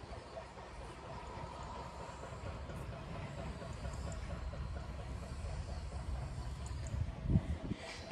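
Steady low outdoor rumble, slowly growing louder, with a few soft thumps near the end.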